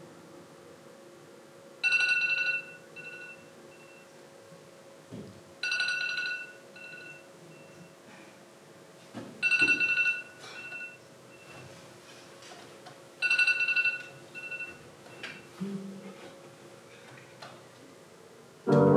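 Electronic phone alarm tone going off: a short bright chime repeats four times, about every four seconds, each followed by a few fainter, shorter beeps, over a faint steady hum.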